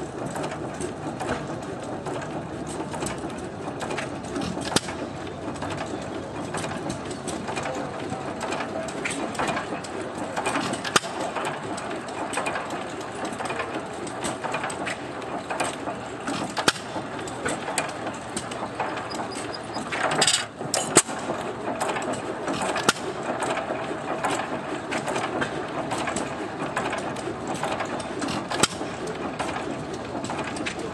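Antique single-cylinder hit-and-miss stationary gas engine running, a steady mechanical clatter from its valve gear and governor broken by sharp pops every few seconds. The loudest pops come about two-thirds of the way through.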